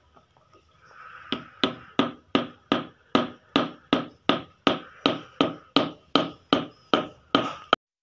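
A steady, even run of sharp clicks, about three a second, starting a little over a second in and stopping abruptly just before the end.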